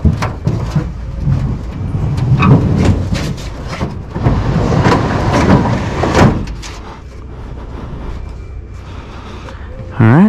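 Aluminum jon boat on a wheeled dolly being pushed up onto a pickup's tailgate and into the bed. There is a knock at the start, then several seconds of the hull scraping and sliding with more clunks, which dies down about six seconds in.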